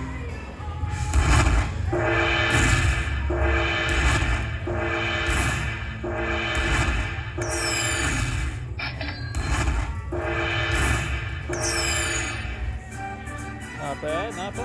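Dragon Link slot machine's win celebration music, a rhythm of repeating hits about every 0.7 s, playing while the bonus win counts up on the credit meter after the free spins. A quick falling whistle sounds twice over the music.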